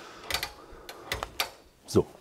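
Several light clicks and knocks, about five in two seconds, from kitchen handling at a stove and counter.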